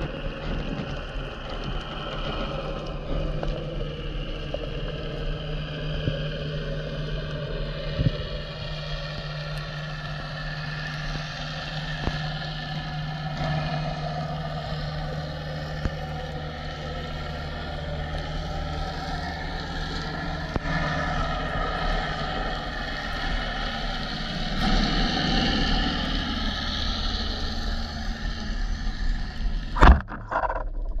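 Underwater sound through a camera housing: a steady low drone with slowly wavering tones, the engine noise of a boat carried through the water. A single sharp click stands out about eight seconds in.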